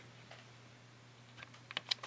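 A steady low hum with a quick run of four or five light clicks near the end.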